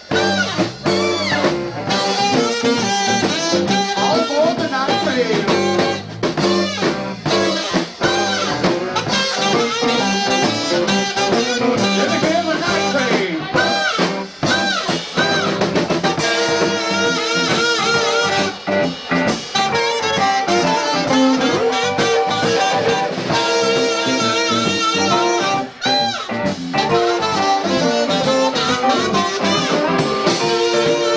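Live blues-jazz band playing: saxophone lines over electric guitar and drum kit, with bending melodic phrases and a steady beat.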